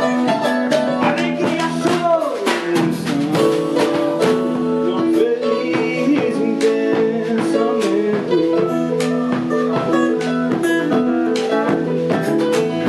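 Live band music: strummed acoustic guitar, electronic keyboard chords, bass guitar, a drum kit, and a large hand drum struck with a stick, with a melody line over them that bends in pitch in the first few seconds.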